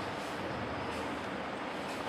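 Steady background noise, an even hiss with no distinct events: the room and recording noise of a sermon recording while no one speaks.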